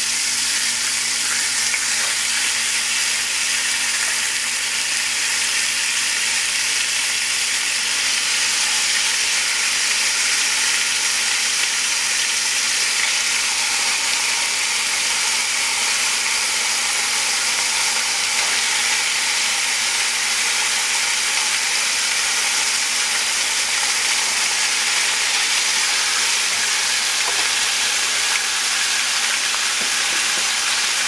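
Teriyaki-marinated chicken breasts sizzling on a hot cast-iron grill pan: a loud, steady frying hiss.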